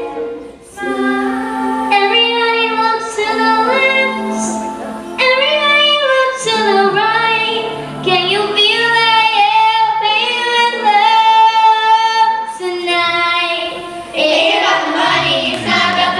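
Several girls' voices singing together through handheld microphones, held notes with several pitches sounding at once; the singing grows fuller and louder near the end.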